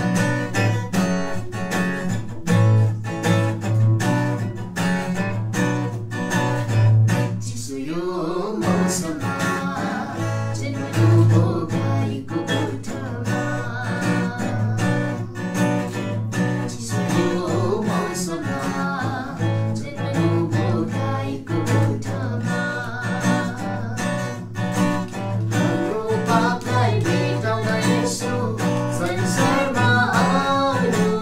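Acoustic guitar strummed in steady chords accompanying singing; the voice comes in clearly about eight seconds in and carries on over the guitar.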